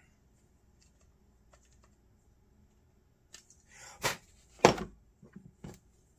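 Small metal carburetor parts and a screwdriver being handled: quiet at first, then a run of short clicks and taps over the second half, with one louder sharp knock a little before the end.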